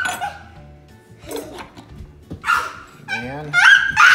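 A dog whining: high cries that slide up in pitch and then hold, one trailing off at the start and two louder ones near the end.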